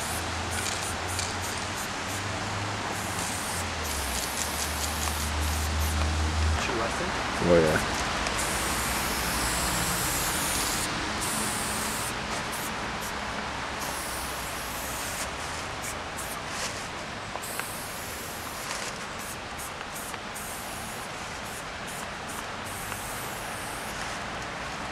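Aerosol spray-paint can hissing in bursts of varying length as outlines are sprayed, over a steady background noise; a low hum stops about six and a half seconds in, and a brief loud sound comes about a second later.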